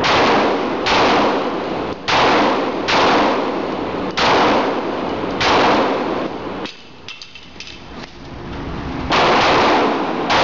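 A string of about seven pistol shots fired roughly a second apart, each followed by a long echo off the enclosed range, with a pause of about two seconds before the last shot.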